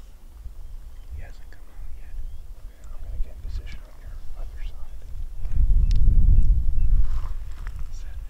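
Hushed whispering. About five and a half seconds in, a low rumble of wind on the microphone swells and fades.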